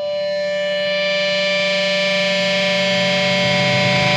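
Song intro: a single distorted synthesizer tone held steady over a low buzz, slowly growing louder.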